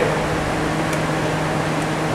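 A steady machine drone with a low, even hum underneath, running without change.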